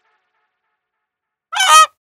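Near silence, then one short, loud honk about a second and a half in, a comic sound effect laid over a test-card transition.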